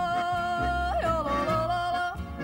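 Swiss folk yodel: a woman's high voice holds one long note, then breaks sharply to a lower pitch about a second in, with accordion, guitar and double bass behind her.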